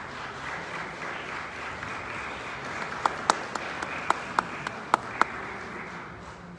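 A crowd applauding steadily. For a couple of seconds in the second half, several sharper, louder claps stand out close by.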